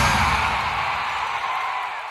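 The end of a TV football programme's electronic intro jingle: the beat has just stopped and a hissing wash of sound fades away steadily.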